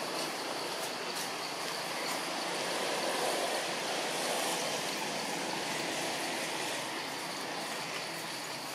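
Steady outdoor rushing noise, swelling slightly midway, with a faint steady high insect drone over it.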